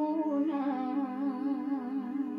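A woman singing a Romanian doină, drawing out a long, wordless, wavering note with slow vibrato over a steady drone.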